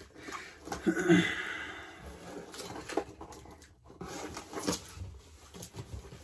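Cardboard shipping box being handled and opened by hand: rustling and scraping of cardboard and packing tape with scattered small knocks, busiest in the first few seconds, and a brief low murmur from the man about a second in.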